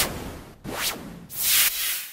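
Whoosh sound effects of an animated logo intro: three swishes of noise, one at the start, a weaker one just before a second in, and another about a second and a half in.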